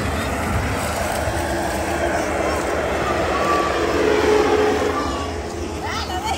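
Foam cannon's blower running steadily as it sprays foam, a continuous even rush of air, with people's voices faintly in the background.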